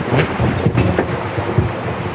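Wind buffeting a clip-on microphone: a steady rushing rumble with irregular low thumps.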